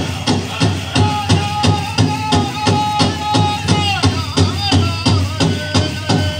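Powwow drum group playing a jingle dress dance song: a big drum struck in a steady beat, about three strokes a second, under high singing voices whose notes slide downward at phrase ends.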